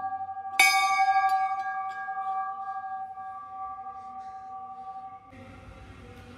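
Hanging brass temple bell already ringing, then struck hard about half a second in with a loud clang, followed by a long ring that wavers and slowly fades. The ring breaks off abruptly about five seconds in.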